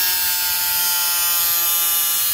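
Small angle grinder running with its cutting disc in a black plastic blower tube, cutting a hole: a steady high-pitched whine.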